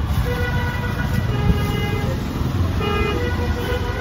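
Busy street traffic: a steady low rumble of engines, with vehicle horns honking at intervals, about half a second in and again near three seconds in.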